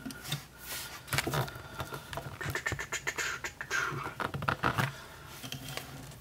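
Hard plastic transforming robot toy being handled: a run of irregular short clicks and snaps as its parts are pushed and set into place.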